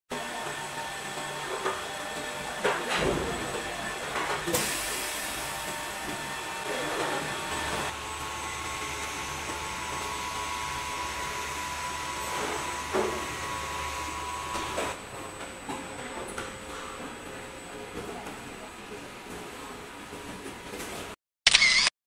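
Large-format 3D printer running: several steady whining motor tones with scattered clicks and knocks, and a low hum that comes in about eight seconds in and drops away about seven seconds later. A short, loud rushing burst comes just before the end.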